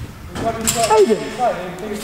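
Footballers shouting calls to each other in Portuguese during a small-sided game.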